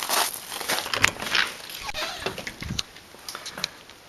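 Footsteps crunching on gravel, with scuffs and clicks of the camera being handled, a string of irregular sharp crackles that thin out toward the end.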